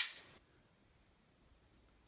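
The sharp metallic snap of a Zero Tolerance 0055 titanium frame-lock flipper knife flicked open on its bearing pivot, the blade slamming to full lock. The snap rings away in under half a second.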